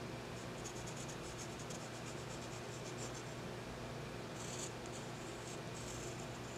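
Graphite pencil sketching on a small paper card: a run of faint, short scratchy strokes, with a longer, stronger stroke about four and a half seconds in. A steady low hum sits underneath.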